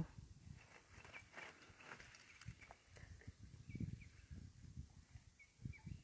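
Near silence: faint outdoor background with a low rumble and a few soft scattered clicks.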